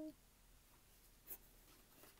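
Near silence, broken once about two-thirds of the way in by a short rustle of a glossy photobook page being turned.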